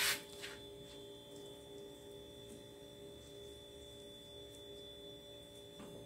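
Faint steady electrical hum with a thin high whine, after a short burst of noise right at the start and a softer one about half a second in.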